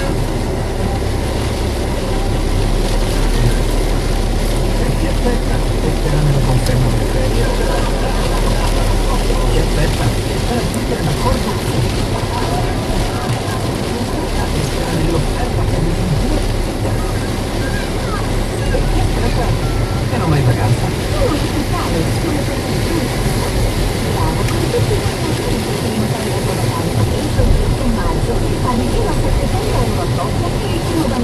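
Inside a moving car: steady engine and road noise on a wet road, with the car radio playing voices underneath.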